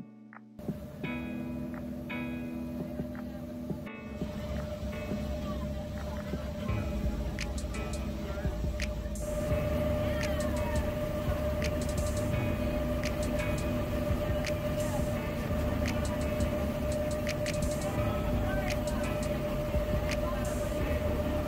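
Tour boat under way: a steady engine drone with a constant whine and a low rumble, mixed with wind and water noise. Soft background music plays over it until about nine seconds in, and the engine sound grows louder from then on.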